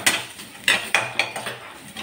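Steel slotted spatula scraping and clinking against an aluminium kadai while stirring grated coconut: about four sharp strikes in the first second and a half, then softer scraping.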